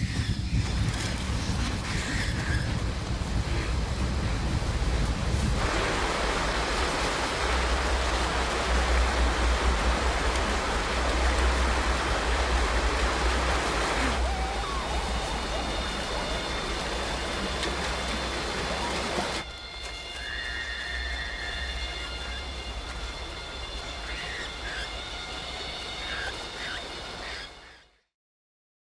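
Film soundtrack with a deep steady rumble under a haze of noise, which swells louder for several seconds in the middle, drops back about two-thirds of the way through, and cuts off at the very end.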